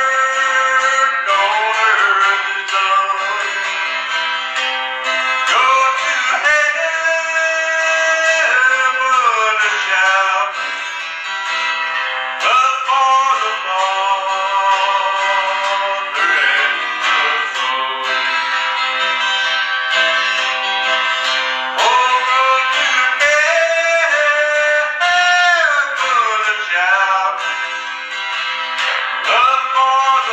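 Acoustic guitar strummed steadily under a man's sustained singing voice, a slow country-gospel song; the sound is thin, with no bass.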